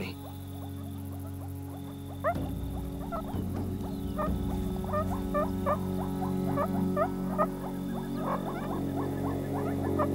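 A group of meerkats calling in short, rising chirps. The chirps begin a couple of seconds in and come thicker toward the end, over background music with sustained low notes.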